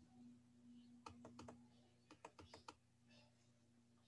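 Near silence with faint computer clicks: two quick runs of light clicks, about a second in and again about two seconds in, as the on-screen document is scrolled down. A faint steady hum lies underneath.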